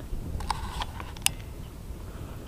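Low wind rumble on a handheld camera's microphone, with a few short faint clicks of handling.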